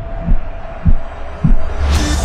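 Three deep bass thumps about 0.6 s apart, each dropping in pitch, over a low rumble, making a slow heartbeat-like pulse in a trailer's soundtrack. A swell rises near the end.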